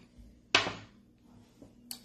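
A die thrown onto a cloth-covered table, landing with one sharp knock about half a second in, followed by a faint tap about a second later.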